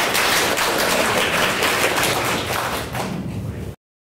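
Audience applauding, a dense patter of many hand claps that cuts off suddenly near the end.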